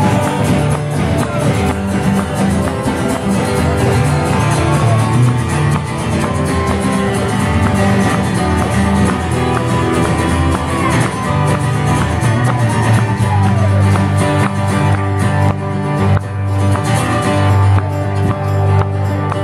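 Live acoustic band playing an instrumental passage: several strummed acoustic guitars over a steady beat, with percussion struck by a stick.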